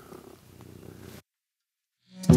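A cat purring, faint, until the sound cuts off abruptly to dead silence just over a second in.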